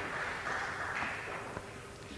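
Low, even background noise of a tournament hall, slowly fading, with no ball strikes and no commentary.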